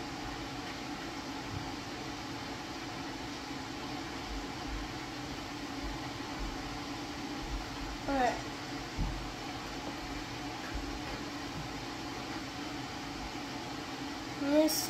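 Steady low hum of room noise, like a fan or air conditioning, with a short falling voice sound about eight seconds in and a few faint soft knocks.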